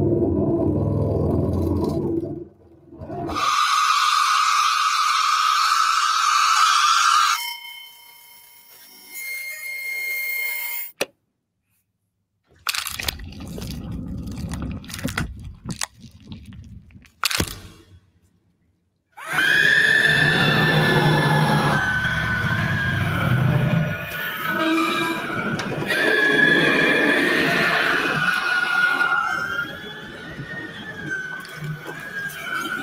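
Film sound-effect layers for a horror scream played back one after another, among them a coffee maker's wet sound about four seconds in. From about two-thirds of the way in, the layers play together as one composite scream: a long, wavering high cry over low, rough layers.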